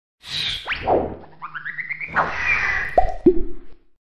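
A string of cartoon-style sound effects: a falling whoosh, a quick upward zip, a short run of rising notes and a swish, then two plops about a third of a second apart near the end.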